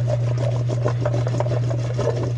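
Cubed raw potatoes being mixed with seasoning in a stainless steel bowl: a fast run of small scrapes and clicks as the potatoes rub and knock against the metal.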